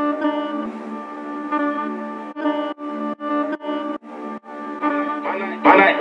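UK drill instrumental intro: a melodic loop with no bass or drums in yet, cut into a quick run of stutters in the middle. A short spoken voice tag comes in right at the end.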